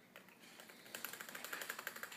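Husky puppy's claws clicking and tapping rapidly on a hardwood floor as it scrambles about, the clicks growing denser about a second in.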